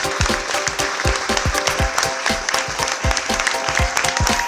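Theatre audience applauding, dense continuous clapping, with music playing underneath.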